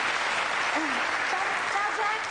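Studio audience applauding steadily, with a voice starting to speak faintly under the clapping near the end.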